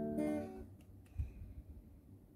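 A chord on an acoustic guitar, strummed again just after the start and left to ring out within about a second. A soft low thump follows.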